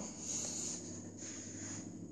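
A faint, soft hissing rustle over a low steady hum, loudest in the first second.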